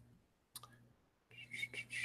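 A single faint click from the laptop's controls about half a second in, over a faint low electrical hum. Faint sound builds near the end.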